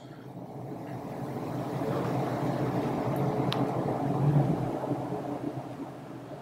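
A low rumbling noise with a steady hum swells up over the first couple of seconds, peaks about four seconds in and eases off near the end. A single sharp click sounds about halfway through.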